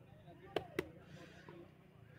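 Two sharp knocks about a quarter of a second apart, a little past half a second in, over a faint low hum.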